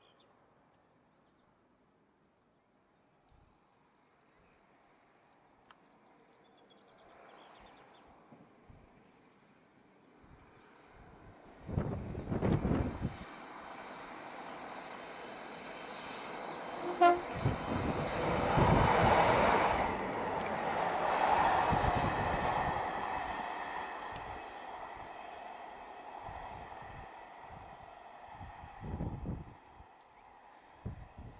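A Class 150 Sprinter diesel multiple unit approaches and passes. The rumble of its engine and wheels on the rails builds slowly, is loudest a little after halfway, then fades. A short horn toot sounds just before it is loudest, and gusts of wind buffet the microphone twice.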